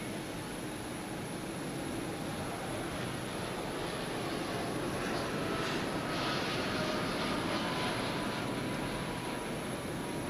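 Steady aircraft noise on an airport apron: a jet airliner's engine or auxiliary-power hum and rush with a thin high whine, swelling a little in the middle.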